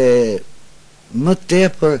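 Elderly man speaking Albanian, with a short pause in the middle.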